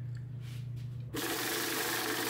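A small machine starts whirring suddenly about a second in and runs steadily, over a low steady hum.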